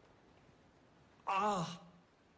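A man's short, wavering sigh, about half a second long, coming about a second and a half in, as he stirs from sleep. Before it there is only faint room tone.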